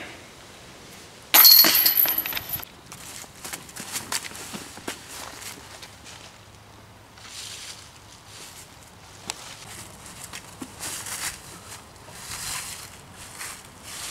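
A disc golf chain basket struck with a sudden loud metallic clash, the chains ringing for about a second, then irregular footsteps crunching through dry fallen leaves.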